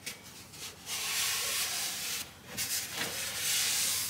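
A paper-cloth shop wipe rubbed across a freshly sanded bare wooden guitar body in two long wiping strokes, the first about a second in and the second near the end. It glides over the wood without snagging, a sign that the surface is smooth and free of raised fibres, ready for finish.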